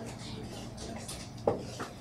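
Low murmur and shuffling of a seated audience in a hall, with one sharp knock about one and a half seconds in and a lighter one just after.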